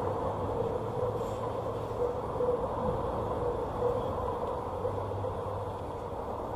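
A train running by: a steady rumble with a continuous hum, easing slightly near the end.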